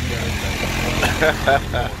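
Golf cart's motor running steadily with a low hum as it drives along a wet path.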